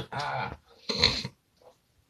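Two short vocal sounds, each about half a second long, the second higher and brighter than the first.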